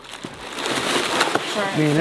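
Foil-faced packing wrap and kraft paper crinkling and rustling as a steel part is pulled out of a cardboard box, a dense crackly rustle that builds through the first second and a half.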